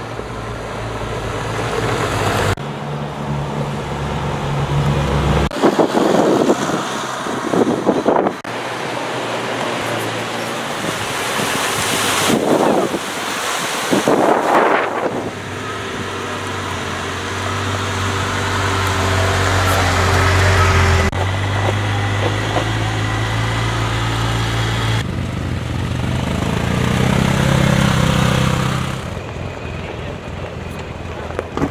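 Side-by-side UTV driving past on a gravel track, its engine running under tyre noise on the gravel. The sound changes abruptly several times between short shots.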